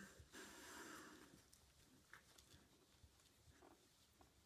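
Near silence: faint room tone with one soft, breath-like rush lasting about a second near the start, then a few faint ticks.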